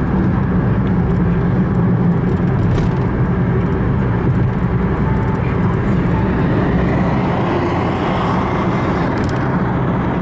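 Steady road noise of a car driving at speed, heard from inside: a low, even rumble of tyres and engine with a fainter hiss above it.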